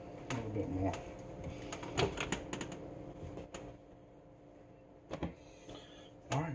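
A few sharp clicks and knocks of a cooking utensil being handled and set down at the stovetop, around two seconds in and again near five seconds, over a faint steady hum.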